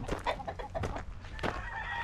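Gamecocks and hens clucking in their cages, with a rooster crowing faintly in the background near the end.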